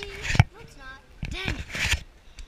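Unclear talking voices in short bursts, with a sharp knock about half a second in and a second click about a second and a half in.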